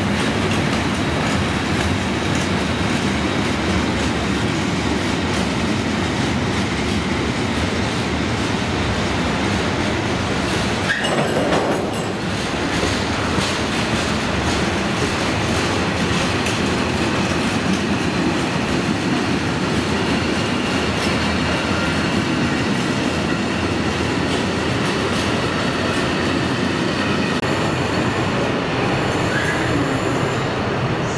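A long freight train of covered wagons rolling steadily past at close range, its wheels clattering over the rail joints. There is a brief sharper knock about eleven seconds in.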